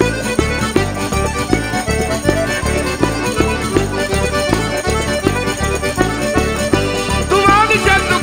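Calabrian tarantella played on accordion over a steady, bouncing bass beat; a singing voice comes in near the end.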